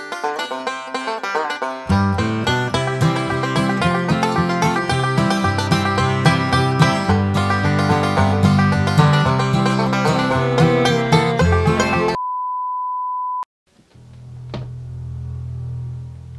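Upbeat background music on plucked strings, with a bass line coming in about two seconds in, stops abruptly near the end and gives way to a single steady high beep lasting just over a second. A low hum with a couple of sharp clicks follows.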